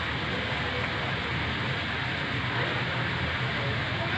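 Steady, even rush of running water, as from a garden pond's water feature, with no distinct events.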